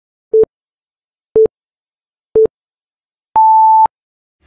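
Electronic countdown beeps: three short, low beeps about a second apart, then one longer, higher beep marking the count reaching zero.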